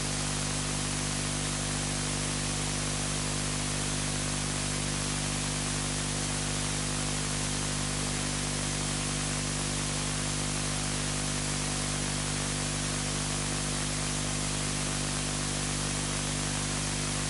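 Steady hiss with a low, even hum under it and nothing else happening: the recording's background noise.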